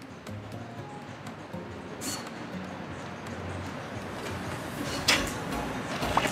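Quiet music with faint light ticks from a phone's spinning name-picker wheel, and a brief louder burst about five seconds in.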